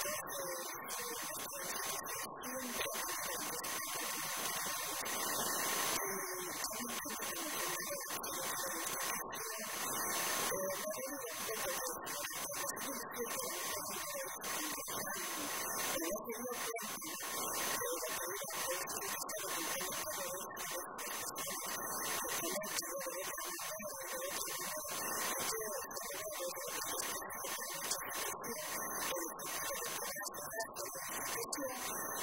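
A woman speaking Spanish into a microphone, over a steady hiss and a thin steady whine.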